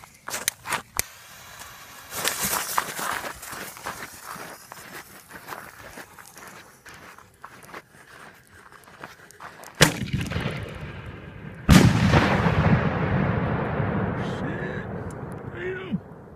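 Homemade salute-can firework going off: a sharp bang about ten seconds in, then a louder bang under two seconds later that rolls away in a long fading echo. Footsteps and rustling are heard before the bangs.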